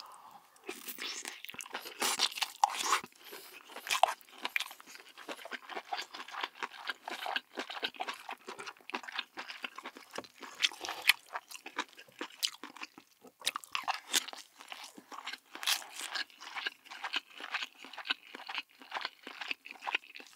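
Close-miked chewing of a mouthful of spicy stir-fried webfoot octopus and rice: a dense, irregular run of short mouth clicks and smacks without a break.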